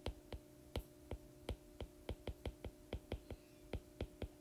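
Stylus tip ticking against an iPad's glass screen during handwriting: faint, sharp, irregular taps, several a second, over a faint steady hum.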